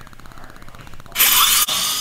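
Dental drill sound effect starting about a second in: a sudden loud hissing whir for half a second, then running on more quietly with a faint high whine.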